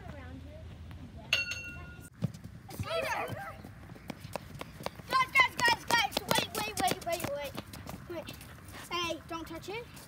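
Children shouting and laughing as they run, with a quick patter of sneakers on wet concrete through the middle, loudest from about five seconds in.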